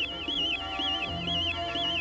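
Warbling electronic sound effect of a cartoon robot hound extending a probe from its mouth, a high tone wavering up and down about three times a second, over background music.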